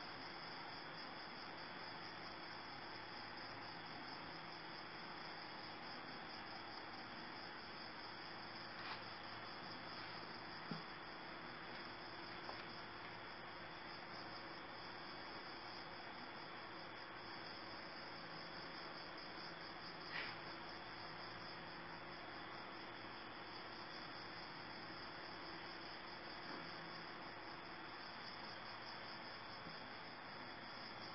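Crickets chirring in a steady, continuous high trill, with a few faint taps.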